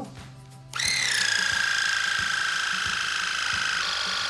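Electric ear-irrigation pump switching on about three-quarters of a second in and running with a loud, steady, high whine, its pitch sinking slightly as it comes up to speed. It is pumping warm water into the ear canal to wash out impacted earwax.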